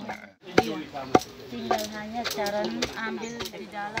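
Two sharp knocks about half a second apart near the start, then several women's voices talking quietly in the background.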